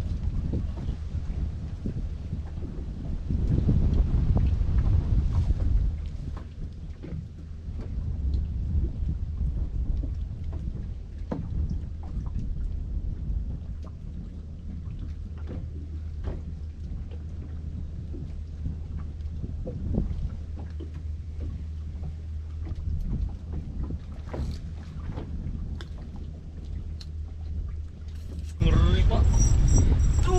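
Wind rumbling on the microphone in an open boat, swelling and easing, with scattered light clicks and knocks. Near the end the sound suddenly jumps louder.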